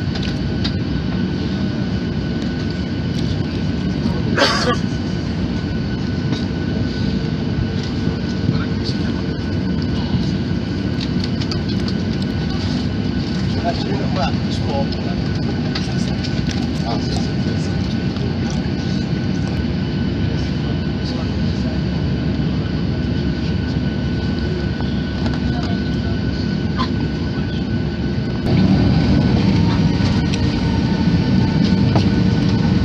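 Airliner cabin noise while taxiing: the engines and cabin air run with a steady low hum and rumble, with a sharp knock about four and a half seconds in. Near the end the engine noise steps up louder with a rising whine as thrust is added.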